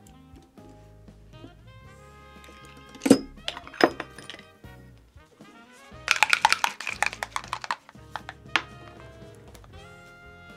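Instrumental background music plays steadily while art supplies are handled. Two sharp clicks come about three and four seconds in, then a run of quick clattering clicks for about two seconds, and one more click near the end.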